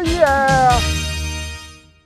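A voice ends a drawn-out laugh, its pitch sliding down and stopping just under a second in, over background music whose steady bass fades out near the end.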